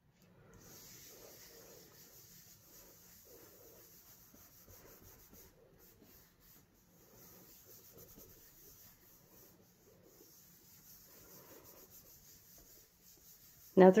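Faint soft rustling of hands rubbing and pressing a sheet of cardstock onto a gel printing plate, burnishing the paper to lift the ink print.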